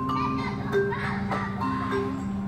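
Vibraphone played with mallets: single struck notes ring on and overlap in a slow melodic line.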